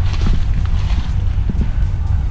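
Wind buffeting the microphone, a steady low rumble, with a few faint ticks.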